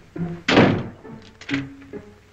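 Orchestral film score with short plucked-string notes, cut by one loud, noisy thump about half a second in that fades over roughly half a second.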